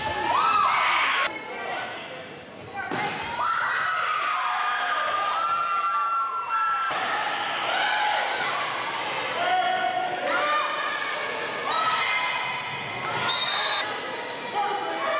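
Indoor volleyball play in a gym: several sharp hits of the ball, with short squeaks and players' voices echoing in the hall.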